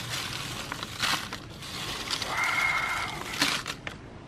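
Tortilla chips being crushed by hand in a heap, a dry crackling crunch that comes in irregular surges with a few sharper snaps. A short high tone sounds over it a little past halfway.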